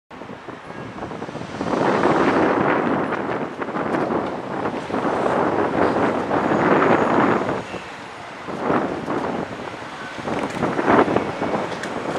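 Outdoor wind buffeting the microphone in gusts that swell and fade over street noise, with a sharp knock near the end.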